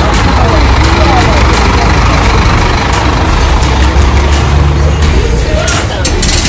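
A bus engine running, a loud steady low rumble, with voices of a crowd around it.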